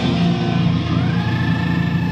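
Live rock band's electric guitars ringing out sustained notes, with a high guitar note sliding up about halfway through and then held.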